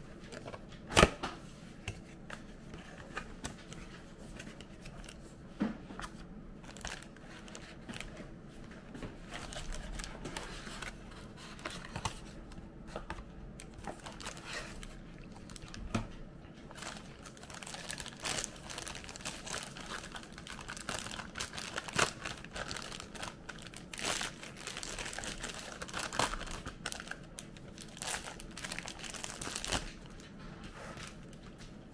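Cardboard box being handled and opened, then a plastic bag crinkling as a shower head is unwrapped from it. Scattered clicks and knocks throughout, with a sharp knock about a second in; the crinkling is densest in the second half.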